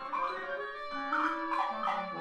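Mixed chamber ensemble of woodwinds, brass, strings and percussion playing dense modernist concert music: sustained high notes cut by several sharp accented attacks, with a lower held note entering near the end.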